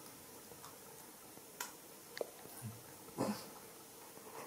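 Baby monkey grooming a man's hair: a few faint clicks and one short, high squeak about two seconds in.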